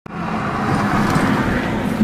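Steady traffic noise from motor vehicles, with a low wavering engine-like hum.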